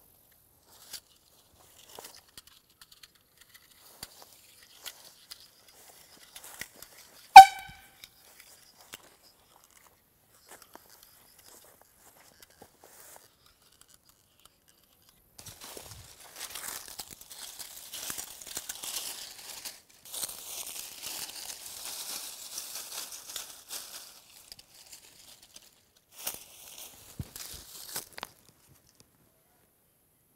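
A can air horn on a homemade tripwire alarm gives one very short, loud blast about seven seconds in, after a few faint clicks from the trigger being handled. From about halfway on, dry grass and brush rustle and crackle for some ten seconds as it is handled.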